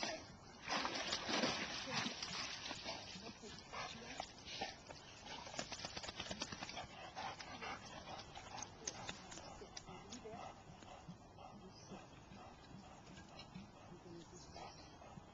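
Water splashing and sloshing as a black retriever swims up to a rock and climbs out of the pond, loudest about a second in, then smaller splashes and drips that slowly fade.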